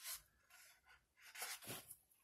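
Faint rustling of paper sticker-book pages being handled, in two short spells, the second starting about a second in.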